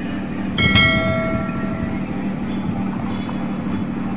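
A single bell-like chime struck about half a second in, its several tones ringing and fading out over about a second and a half: the notification-bell sound effect of a subscribe-button animation. A steady low background rumble runs under it.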